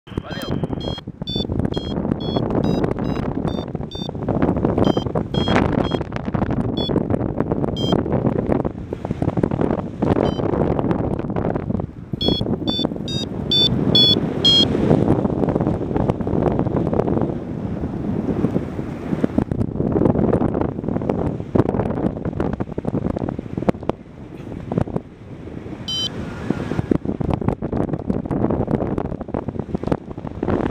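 Wind rushing over the microphone in flight, gusting up and down, with a paragliding variometer's short high beeps in quick runs during the first few seconds and again around the middle, and once more late on: the vario signalling climbing lift.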